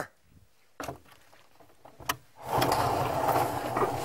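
Onions and garlic frying in oil in a pan, a steady sizzle that starts about two and a half seconds in. Before it there is near silence with a couple of faint knocks.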